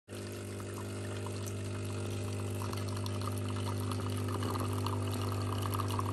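De'Longhi Autentica bean-to-cup espresso machine dispensing coffee: its pump hums steadily while two streams of coffee pour into a mug. The splash of the pour grows clearer about halfway through.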